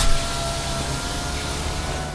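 A small fuel-free generator unit running: its motor and fan give a steady whirring hiss with a thin high whine over a low hum.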